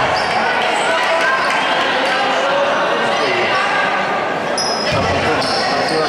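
Basketball court sounds in a large echoing hall: a ball bouncing on the hardwood floor, with a few low thuds, amid voices. Shoes squeak briefly on the floor near the end.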